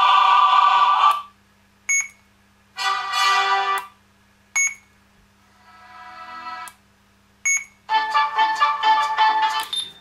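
Short snippets of music tracks played by a chestbox sound board's audio player through a small speaker. Each stops after a second or two, and a short beep comes before the next one starts, about every two to three seconds; one snippet fades in. A steady low hum runs underneath.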